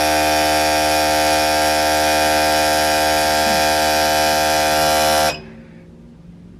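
Four 850 cc fuel injectors pulsing rapidly on a fuel injector cleaner and tester during a flow test, a loud steady buzz that cuts off suddenly about five seconds in.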